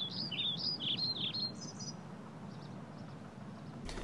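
Ruby-crowned kinglet singing: a quick run of repeated, rising-and-falling whistled phrases, ending about two seconds in with a few higher notes, over a steady low background hum.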